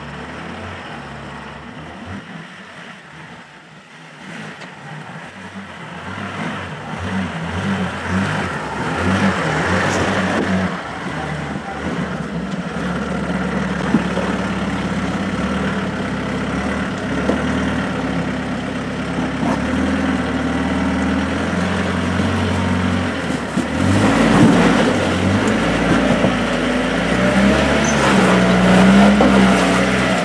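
Land Rover Defender's engine labouring under load as it crawls up a rocky step, the note rising and falling with throttle. Quieter for the first few seconds, then growing louder, with stronger revving surges near the end.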